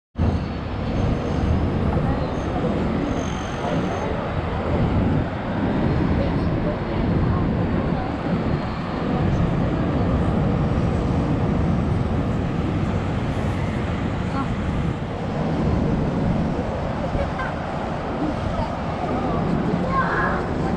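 Steady outdoor city noise from high above the streets: a low rumble of traffic and wind, with indistinct voices of people nearby.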